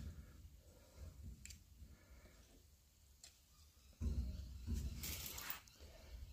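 Faint handling of a digital caliper being set against the lathe with its depth gauge: a few light clicks, then a louder low rustling stretch about four seconds in.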